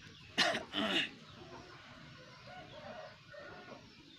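A person coughs twice in quick succession, two short rough bursts close together.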